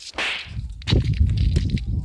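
Wind buffeting the camera's microphone: a short hiss near the start, then a loud, uneven low rumble from about a second in.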